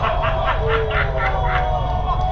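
A man laughing in quick, repeated bursts over a steady low rumble.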